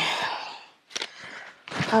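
A woman's breathy sigh trailing off, then a light click about a second in; a woman starts speaking near the end.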